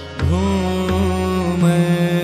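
Pushtimarg kirtan music in Raag Malhaar. After a brief dip at the start, a melodic line glides up about a quarter-second in and then holds, wavering slightly, over a steady drone.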